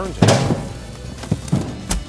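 Cardboard boxes tumbling off a stretch wrapper's turntable and hitting the floor: one loud thud about a quarter second in, then several smaller knocks. The load is being pulled off by too much film tension.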